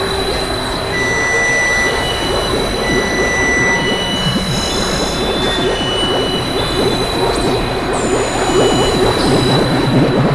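Experimental electronic noise music: a dense, crackling, rushing wash of noise with a constant high whistle, short high beeps on and off, and a few quick downward-sliding high tones in the second half.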